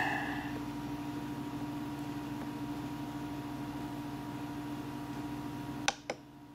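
A steady electrical hum with a few faint steady tones, and a single sharp click near the end.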